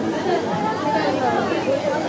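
Several people talking at once, a steady chatter of voices with no single clear speaker.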